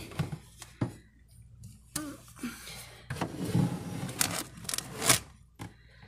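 Scraping, rustling and a few sharp knocks as a white mesh basket of potatoes is slid onto a pantry shelf and packages around it are moved, with the loudest knock near the end.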